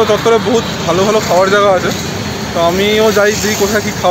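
A person talking, with road traffic noise from passing cars and a motorcycle behind the voice.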